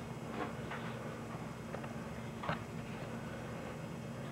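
Quiet room tone with a steady low hum from the tape recording and a few faint light taps or clicks, the clearest about two and a half seconds in.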